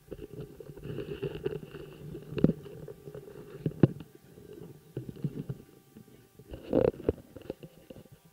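Low rumbling noise with irregular knocks and thumps on an open field microphone, the loudest knocks about two and a half, four and seven seconds in.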